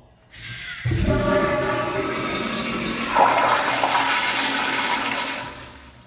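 Commercial toilet's sensor-operated flushometer valve flushing. A soft hiss leads into a sudden loud rush of water about a second in, which runs for about four seconds, surges once midway and fades out near the end.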